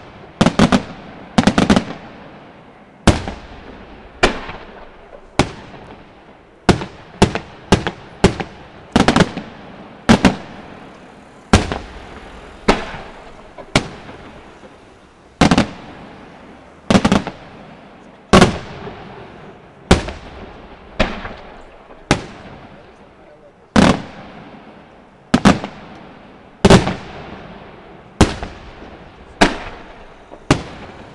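Aerial firework shells bursting in rapid succession, sharp reports about once a second with some in quick pairs, each trailing off in a fading echo.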